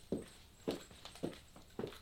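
Platform high heels stepping on a wooden floor: four footsteps, each a short knock, about half a second apart.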